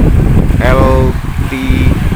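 Wind buffeting the camera microphone in a loud, choppy low rumble, with a person's voice calling out briefly twice, about half a second in and again near the end.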